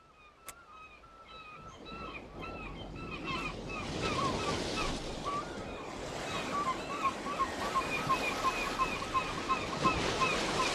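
Waves breaking on a beach, a steady surf that fades in over the first few seconds. Birds call over it in short, arching notes, several a second, growing busier toward the end.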